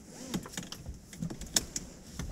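A person climbing into a car's back seat: rustling against the seat with a string of small clicks and knocks, the loudest about one and a half seconds in.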